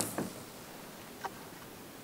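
Spinning rod and reel being handled: a light click just after the start and a faint tick about a second later, over low steady background hiss.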